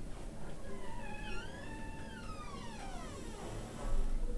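One long, high-pitched cry that rises, wavers and then falls over about two and a half seconds, heard over low room noise.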